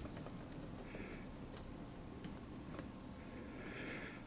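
Faint scattered ticks and light scraping of a small jeweller's screwdriver working in the split spindle of an amplifier's input selector, prising the split open so the knob will grip again.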